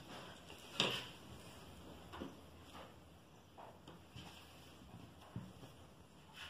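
Faint rustling and a handful of soft, scattered knocks as fabric is handled on a flat surface, the loudest knock about a second in.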